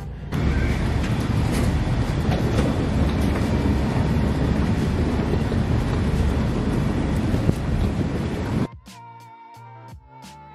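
Loud steady outdoor noise, mostly wind rumbling on the microphone, which cuts off suddenly near the end and gives way to quieter background music with a regular beat.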